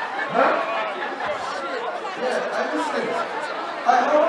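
Several voices talking over one another in a crowded room, with no music playing.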